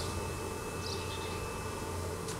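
Outdoor background noise: a steady low hum, with a faint, brief high chirp about a second in.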